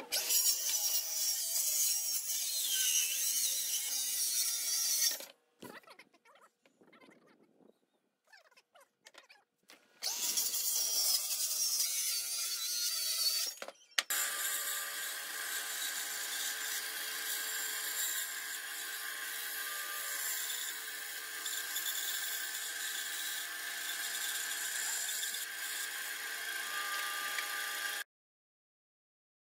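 Cordless jigsaw cutting a pine board: a loud, buzzing cut of about five seconds, a pause, then a second cut of a few seconds. After that a steady machine hum with a few fixed tones runs on.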